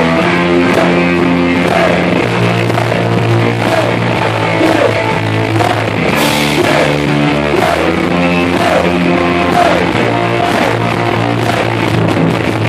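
Punk rock band playing live and loud: electric guitar and drums, with held low chords that change every second or two.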